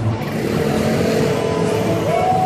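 City street traffic noise, with music coming in about half a second in as one long held note.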